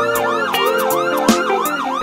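Siren-style sound effect in a song's instrumental intro: a fast yelping tone that swoops down and back up about four times a second, over sustained synth chords.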